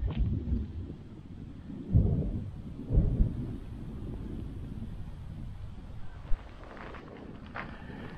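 Wind buffeting the microphone: a low rumble in gusts, loudest at the start and again about two and three seconds in, then steadier.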